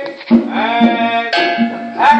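Background music: a song with a held, sliding sung melody over a low note that repeats about twice a second.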